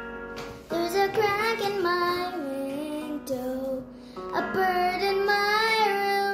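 A young girl singing two long held phrases with gliding, wavering pitch over a sustained instrumental accompaniment, with a short break in the voice about four seconds in.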